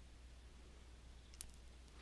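Near silence: room tone with a faint low hum, and a single short mouse-button click about one and a half seconds in.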